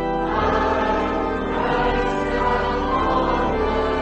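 Choir singing a hymn in slow, held chords.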